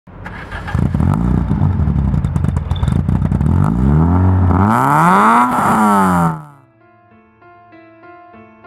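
A tuned Peugeot 106 GTI's 1.6-litre four-cylinder engine revved hard through its sports exhaust: several rises and falls in pitch, with rapid crackling in the first few seconds. The engine sound drops away about six seconds in, and soft piano music begins.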